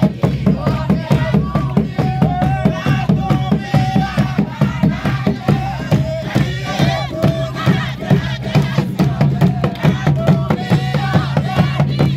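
Large hide-covered frame drums beaten with sticks in a steady beat, under a crowd singing a kigooco hymn together.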